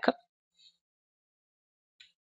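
The clipped end of a spoken word, then near silence.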